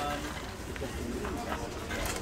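A bird calling faintly over quiet background voices.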